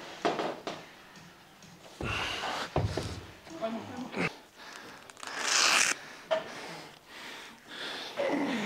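A man's heavy, effortful breathing during a heavy dumbbell pullover set, with a loud hissing exhale about five and a half seconds in, plus a few brief voice sounds.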